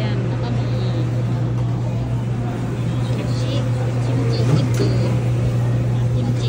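Busy restaurant dining-room noise: a loud, steady low hum under a murmur of voices. A few light clinks of dishes or utensils come in the second half.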